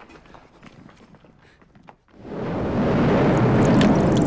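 Faint scattered clicks, then about two seconds in a loud rushing, swirling water sound effect rises in quickly and holds, accompanying an animated logo.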